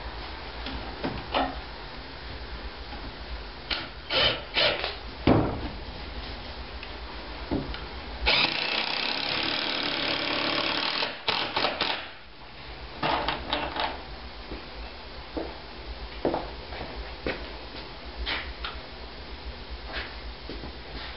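Cordless impact driver running for about three seconds, driving a long deck screw into wood framing, with scattered knocks and clicks of the tool and wood being handled before and after.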